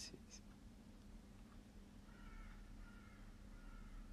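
Near silence: room tone with a low steady hum, and a faint high wavering tone in short pieces during the second half.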